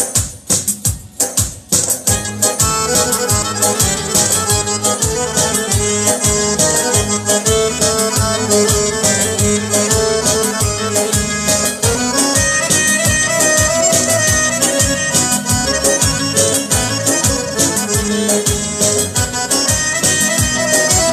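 Live Uzbek folk music played on a long-necked plucked lute and an electronic keyboard, with a steady beat. It opens with sharp percussive strokes, and the full band texture fills in about two seconds in.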